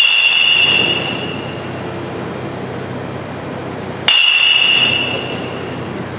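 Metal baseball bat hitting pitched balls twice, about four seconds apart. Each hit is a sharp crack with a high ringing ping that fades over about a second.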